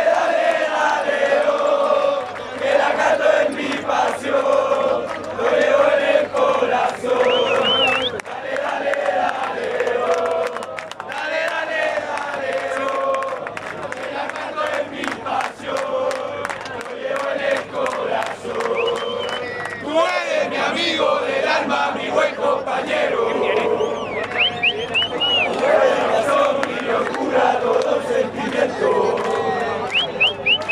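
Large crowd of football supporters in the stands chanting together, loud and close around the microphone. A few short, high whistles rise and fall above the singing.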